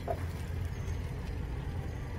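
2016 Ford Expedition's power running board retracting under the door with a quiet motor whir, over a steady low hum.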